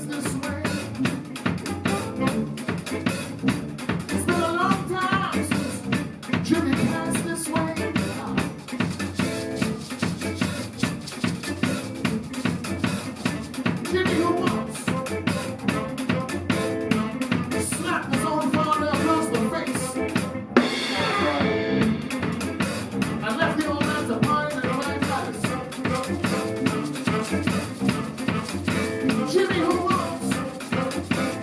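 Live band music led by a drum kit, with rimshots, snare and bass drum keeping a steady beat under hollow-body electric guitar and electric bass.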